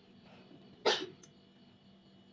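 A single short cough from a person, about a second in.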